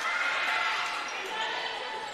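Game sound in an indoor basketball hall: a steady murmur of voices and court noise, with the ball being handled on the hardwood floor.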